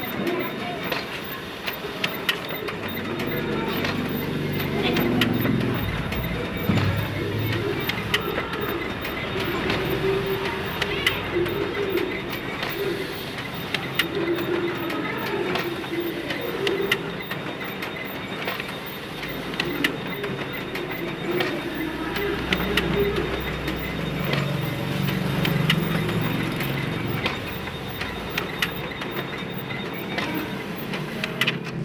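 Office photocopier running a multi-copy job after a fixing-unit repair: a steady mechanical run broken by many sharp clicks as sheets are fed and ejected.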